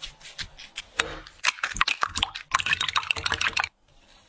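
Silicone spatula pressing and scraping a thick yellow paste in a glass bowl: a rapid run of small sticky clicks and crackles, densest in the last second and cutting off suddenly just before the end.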